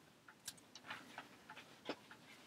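Near silence with about four faint, irregular clicks, the loudest near the end.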